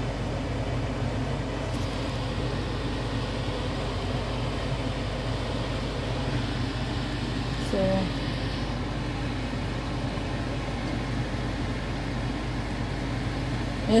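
Steady mechanical hum and hiss from a running appliance, with a brief vocal sound about eight seconds in.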